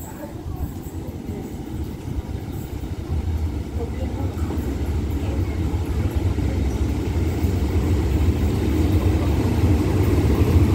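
Hitachi diesel-electric locomotive running into the station with its train, a low engine rumble growing steadily louder as it draws near and becoming stronger about three seconds in.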